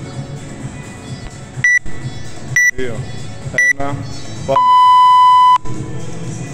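Workout timer countdown: three short high beeps about a second apart, then one longer, lower beep lasting about a second that signals the start of the workout.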